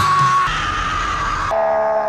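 A loud jump-scare shriek that breaks in suddenly and holds one high pitch. About a second and a half in, it drops to a lower held pitch.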